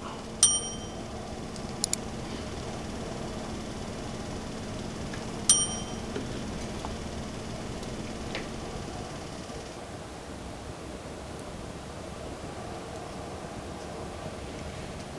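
Two short, bright metallic pings about five seconds apart as small metal hand tools clink together, with a quick double click between them and quiet handling of small plastic parts.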